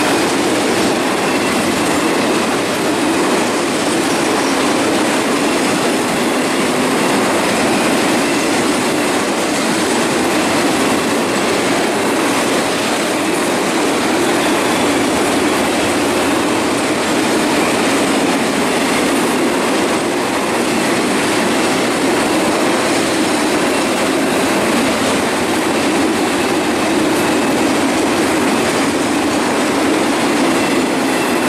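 Container freight train wagons rolling past close by: the steady, loud running noise of steel wheels on the rails, with a faint high wheel squeal.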